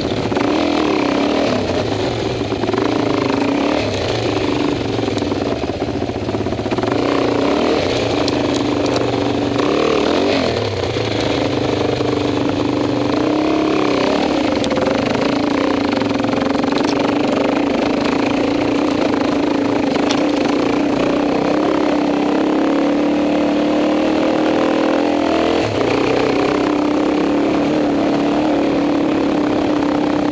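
Dirt bike engine running at low revs through a rough trail ride, the pitch wavering with the throttle in the first half, then settling into a steady drone. A few brief clatters and knocks come through over it.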